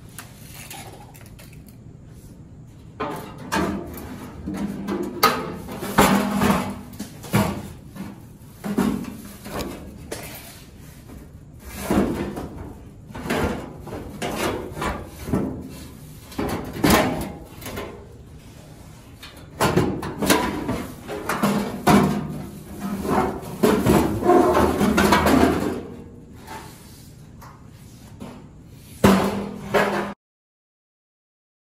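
Irregular clanks, knocks and scrapes of hand tools and metal parts while working on the underside of a pickup's steel cab, coming in bursts with short pauses between.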